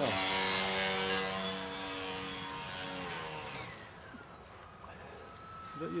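Electric RC biplane's motor and propeller whining steadily while the plane hangs on its prop. About three and a half seconds in, the pitch slides down and holds lower as the throttle is eased, and the sound gets quieter.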